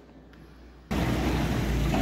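Quiet indoor room tone that cuts off abruptly about a second in to a steady outdoor background rumble and hiss.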